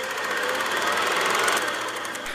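A rapid, even mechanical clatter of many ticks a second, growing louder toward the end.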